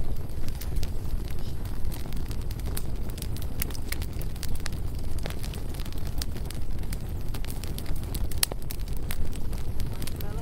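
Wood campfire of split logs burning, with frequent sharp crackles and pops over a steady low rumble.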